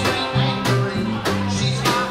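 Live band playing a country-rock tune: electric guitars over a bouncing, stepping bass line, with a drum kit keeping a steady beat of about one hit every 0.6 s.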